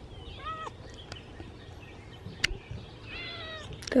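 A domestic cat meowing twice: a short call about half a second in and a longer, higher one near the end, with a single sharp click between them.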